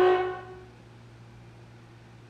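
Alto saxophone holding a single note that stops about half a second in, its sound fading away in the room. A pause follows with only a low steady hum.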